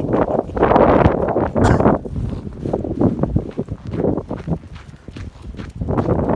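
Footsteps in snow, an irregular run of steps and scuffs, loudest about a second in.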